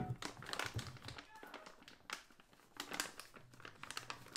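A sharp knock as a metal measuring cup is set down, then scattered clicks, taps and crinkling from handling the kitchen utensils and the plastic bag of baking soda.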